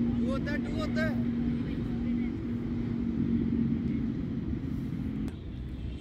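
Steady mechanical hum with a constant low tone, which cuts out suddenly about five seconds in. Brief voices are heard near the start.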